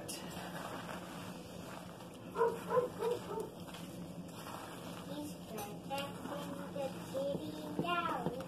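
A child talking faintly in the background in short phrases, over a steady low hum.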